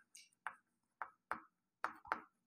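Chalk on a blackboard: faint, short taps and scratches as a word is written, about five separate strokes in two seconds.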